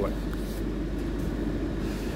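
Steady low background hum of room noise, with no other event standing out.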